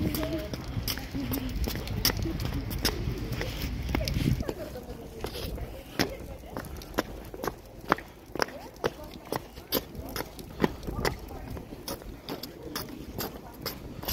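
Footsteps on stone paving, a regular run of sharp steps about two a second. People's voices murmur during the first few seconds.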